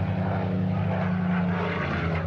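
Propeller aircraft engine running steadily, a continuous low engine tone with no break.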